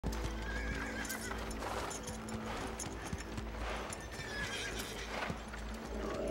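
Horse hooves clip-clopping and a horse whinnying, over background music.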